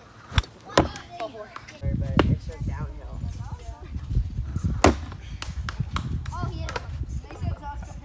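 Sharp knocks of wiffle ball play, about four of them, the loudest about five seconds in, over a low rumble and faint voices.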